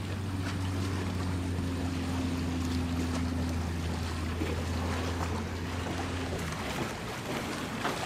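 A low, steady engine hum with a higher tone or two above it, which cuts off about a second before the end, over small waves lapping.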